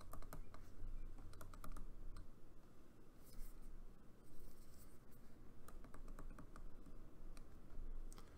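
Faint clusters of small clicks from a stylus tapping and writing on a tablet screen as handwriting is put down.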